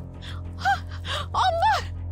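A woman gasping and letting out short, high-pitched distressed cries twice, over a sustained low dramatic music score.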